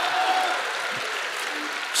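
Theatre audience applauding, dying away gradually.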